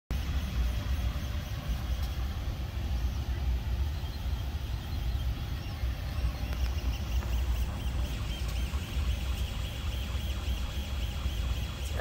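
Ender 3 Pro 3D printer running a print: a steady low hum from its fans and motors. From about seven seconds in, the stepper motors add a run of short, evenly repeated whining tones as the print head moves back and forth laying down layers.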